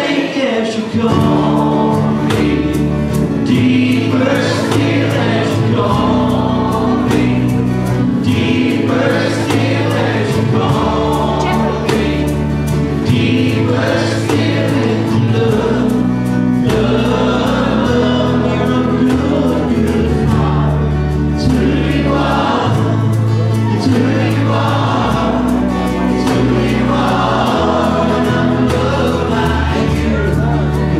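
Church praise band and a group of singers performing a gospel worship song, with acoustic guitars, drum kit and held bass notes under the voices. The drums keep a steady beat throughout.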